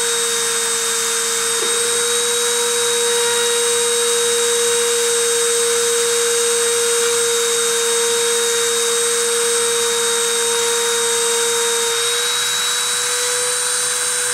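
Dremel rotary tool spindle running at 30,000 RPM, a steady high whine over a hiss, as it friction-surfaces a 0.6 mm sterling silver wire onto a ceramic substrate. Its tone shifts slightly about twelve seconds in.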